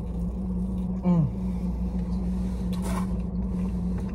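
Steady low hum of a car idling, heard inside the cabin, under chewing on a crisp egg roll. A short falling "mm" comes about a second in.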